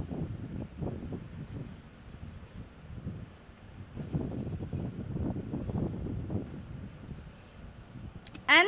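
Low, uneven rumbling background noise that swells and fades, heaviest a few seconds in, with no clear tone or rhythm.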